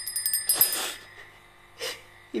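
A crying woman's sobbing breath: a sharp, noisy intake about half a second in, and a shorter breath near the end. At the very start, a quick run of high metallic rings, like a small bell or jingle.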